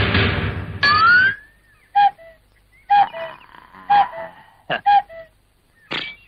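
Background music that ends about a second in with a quick rising sweep, followed by a string of short pitched blips, about one a second, each dropping a step in pitch: edited-in comic sound effects.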